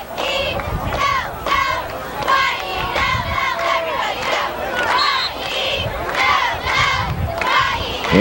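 Football crowd shouting and yelling, many voices overlapping in repeated high cries.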